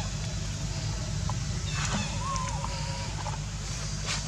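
A steady low rumble, with a few short, faint chirps and a brief rustle around the middle.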